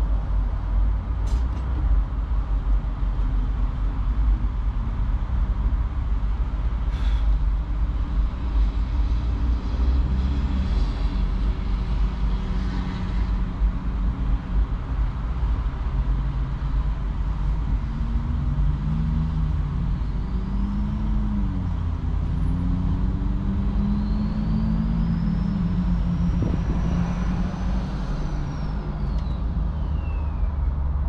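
Vehicle engine idling steadily with a low rumble. In the second half, wavering low tones come and go, and near the end a high whine rises and then falls away.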